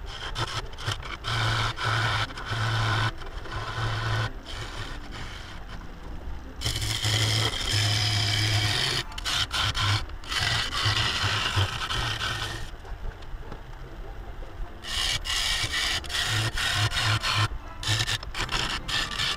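A turning gouge cutting into a spinning River Sheoak (Casuarina) bowl blank on a wood lathe: a scraping cut through very hard, dense timber in repeated passes that stop and start, with the lathe's low hum underneath. The cut eases off for a couple of seconds about two-thirds of the way through, then resumes.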